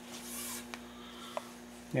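Faint rustle of fabric tape being handled and folded in half, with two light clicks, over a steady low hum.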